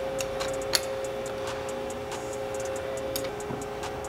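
A few light metallic clicks and ticks as a small wrench, and then a hand, work the reverse lockout solenoid loose from a TR6060 transmission case. The sharpest click comes about three quarters of a second in.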